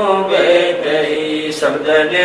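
A man chanting Hindi devotional verses in a melodic, sung recitation.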